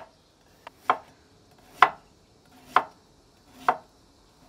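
Heavy Serbian chef's knife slicing ginger root on a wooden cutting board: sharp knocks of the blade hitting the board, slow and even at about one a second.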